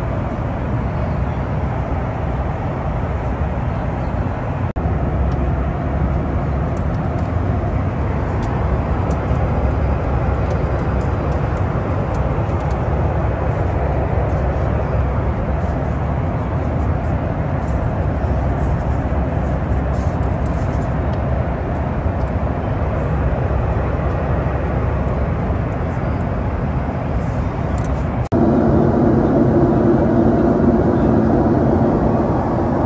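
Steady rumble of a Boeing 737-8 airliner cabin in flight, from engine and airflow noise, with a few faint clicks. Near the end the noise steps up louder with a different tone.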